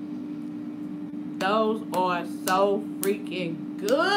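A woman making wordless, pleased "mmm" and humming sounds with gliding pitch while tasting food, broken by a few mouth clicks, starting about a second and a half in. A steady low hum sits underneath.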